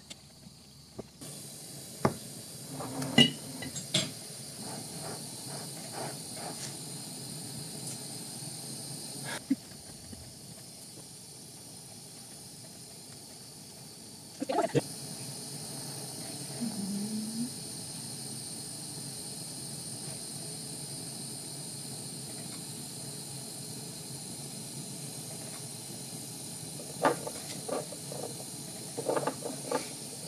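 Steady hiss of a brass gas torch's blue flame as a glass tube is heated and worked in it. Scattered short clicks and taps are heard, with a cluster of them near the end.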